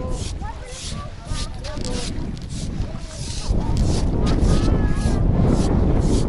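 Wind buffeting the microphone, getting much louder about three and a half seconds in, with faint voices in the background.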